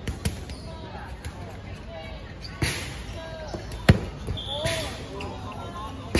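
Dodgeballs smacking against players and the hard court during play: several sharp hits, the loudest about four seconds in, with young players shouting.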